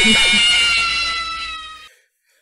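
A loud, sustained sound effect made of several high tones that slide slightly down in pitch and fade out near the end. A man's short vocal sounds show faintly beneath it in the first half second.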